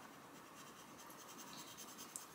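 Faint scratching of a Castle Arts Gold coloured pencil shading on colouring-book paper in quick, repeated strokes, filling an area in solidly.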